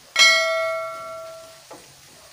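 A single bell-like chime, struck once about a moment after a small click, ringing with several clear tones that fade out over about a second and a half: a notification-bell sound effect.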